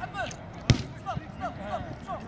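A single sharp thud of a football being kicked, about two-thirds of a second in.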